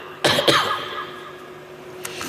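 A man's short cough through a public-address system, about a quarter of a second in. It dies away into a pause with a faint steady hum.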